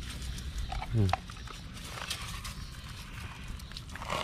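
A puppy with mange gives one short, rising yelp about a second in while being doused with herbal medicine water.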